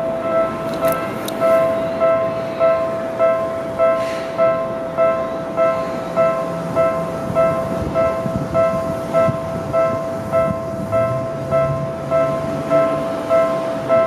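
A railway level-crossing warning bell ringing the same ding over and over, just under two times a second without a break. Under it a train's low running rumble grows in the second half as the train comes in.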